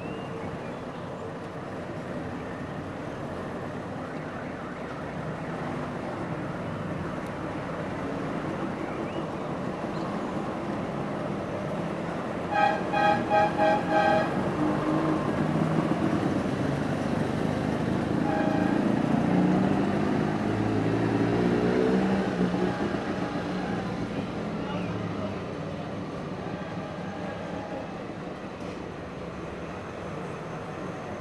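A column of Trabants drives past with their two-stroke engines running, growing louder as cars pass close and then fading. A car horn gives a rapid run of about six short toots around the middle, and one more brief toot a few seconds later.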